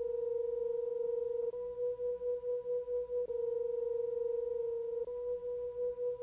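A steady electronic tone around 500 Hz with faint higher overtones. About every two seconds it alternates between a smooth held note and a pulsing, wavering one, with a faint click at each change.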